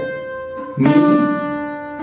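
Requinto tiple plucked one note at a time up the G major scale. The D rings out and fades, then the E is plucked about a second in and rings on.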